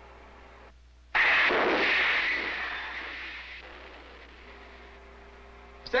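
Submarine torpedo tube firing a torpedo: a sudden rush of air and water about a second in that dies away over two to three seconds.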